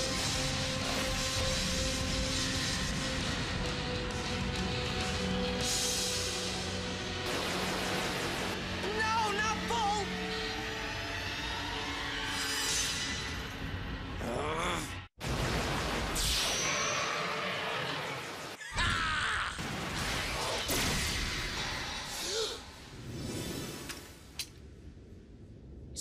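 Cartoon battle soundtrack: dramatic background music mixed with shattering and crash sound effects, with two brief drop-outs in the middle and a quieter stretch near the end.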